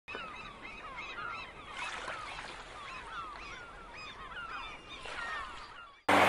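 A flock of birds calling: many short calls that rise and fall in pitch, overlapping one another throughout, heard faintly.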